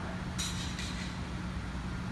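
Steady low hum of a large indoor room's ventilation, with a brief rustle of movement on the turf about half a second in.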